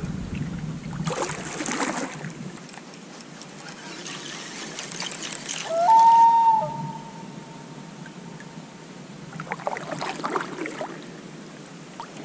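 Water trickling and lapping against a fishing kayak's hull, with a brief rushing swish about a second in. About six seconds in, a clear tone steps up in pitch, holds, then fades over a few seconds.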